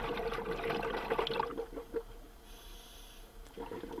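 Water sounds, bubbling and gurgling, that die down after about a second and a half to a faint background.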